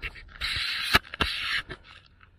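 Footsteps swishing through dry grass and scorched ground litter: two rustling steps about half a second each, with a sharp click between them.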